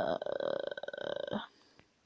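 A person's long, creaky "uhhh" of hesitation, held for about a second and a half.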